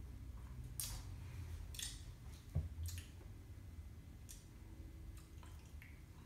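Faint mouth sounds of someone tasting an energy drink just after a sip: a few soft, wet smacks and swallows spread through the quiet, with one soft thump about two and a half seconds in.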